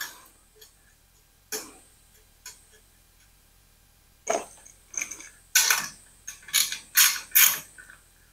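Sharp metal clicks and clinks as a bolt holding a sheet-steel tank-mount piece to a motorcycle frame backbone is done up by hand: two single clicks early on, then a quicker, irregular run of clicks from about four seconds in.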